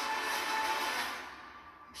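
Film trailer soundtrack playing: music and sound effects in a dense wash with a few steady tones, fading away over the second half, as a line of dialogue begins at the very end.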